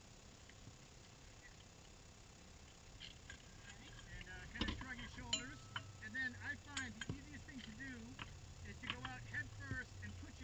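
Faint, muffled talking starts about four seconds in, with a couple of sharp clicks. Before that there is only quiet cabin background.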